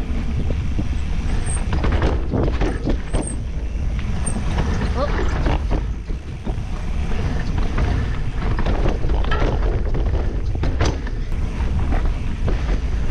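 Mountain bike riding fast down a dirt trail: a steady rumble of tyres and wind on the microphone, broken by frequent knocks and rattles as the bike hits bumps. The rear tyre is sliding, with little traction on the loose dirt.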